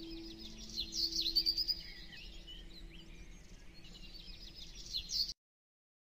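Small birds chirping and twittering in quick high notes, busiest in the second second and again near the end, over a faint held musical note that fades out early. The sound cuts off abruptly about five seconds in.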